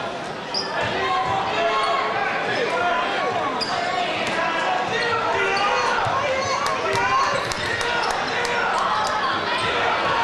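Crowd chatter from many voices echoing in a large gymnasium, with a basketball being dribbled on the hardwood floor and scattered sharp ticks and squeaks of play.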